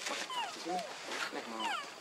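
Macaques calling: a few short squeals falling in pitch, with lower grunting sounds between them.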